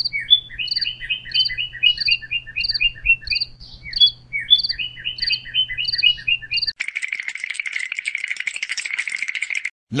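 Small bird chirping, a short phrase of falling chirps repeated about twice a second over a low hum. Nearly seven seconds in, the chirping gives way to a steady, rapid buzzing rattle that stops just before the end.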